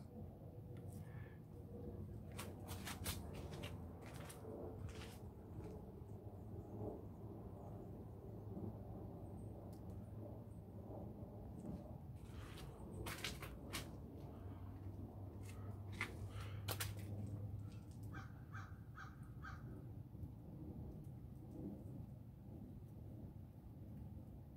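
A bird calling outdoors: a run of about six short, evenly spaced calls near the end, with a few single calls earlier, over faint scattered clicks and a low steady hum.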